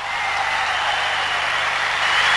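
Concert audience applause and crowd noise swelling up just after the song has ended, then holding steady.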